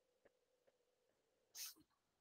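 Near silence: room tone on an online call, with one short hiss-like noise about one and a half seconds in.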